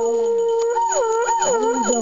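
A wind-instrument melody: one long held note with a second, lower line sliding down under it, then quick wavering turns from about a second in.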